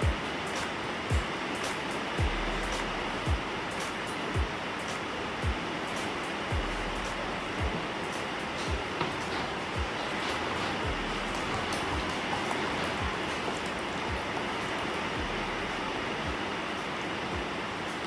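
Background music with a slow, even beat of low thuds about once a second over a steady hiss-like wash; the beat drops out about halfway through while the wash carries on.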